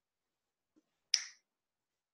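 Near silence broken by a single brief, sharp click a little over a second in.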